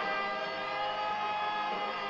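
Electric guitar playing, with notes held and ringing for most of the two seconds.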